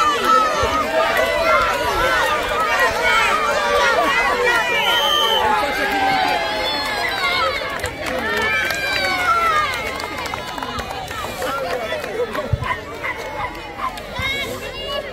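A crowd of children and adults shouting and cheering at once, many high voices overlapping, easing off after about ten seconds.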